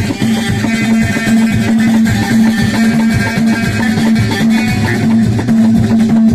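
Moroccan chaabi music played live: a plucked loutar lute over a steady, driving beat of hand drums.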